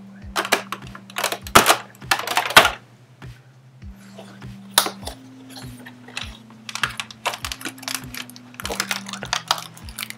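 Fingers working a cardboard advent calendar door open: bursts of scraping, tearing and clicking cardboard, loudest in the first three seconds and coming back in shorter bursts after that.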